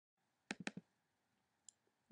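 A quick run of four faint clicks about half a second in, then a single faint click near the end, over near silence.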